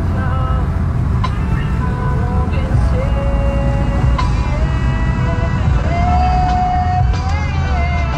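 Steady low road and engine rumble inside a moving car's cabin, with a song carrying a sung voice playing over it, including one long held note about six seconds in.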